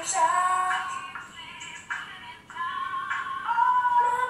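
A young girl singing, holding long notes that slide up and down in pitch, with short breaks between phrases.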